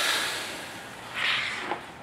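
Tippmann 1500 clicker die-cutting press finishing a cut through chipboard: a hiss of air that fades over about a second, then a second, shorter hiss about a second in and a light click near the end.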